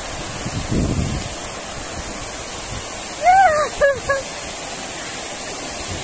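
Arching fountain jets spraying and splashing down onto a walkway, a steady hiss of falling water. About three seconds in, a person gives a brief high-pitched call.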